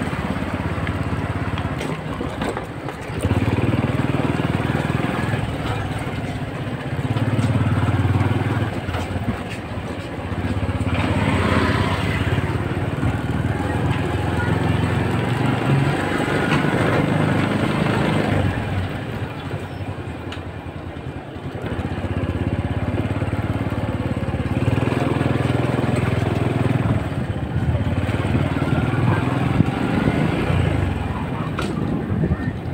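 Small motorcycle engine running while riding along a street, the engine sound swelling and easing several times with the throttle over a steady rush of road and wind noise.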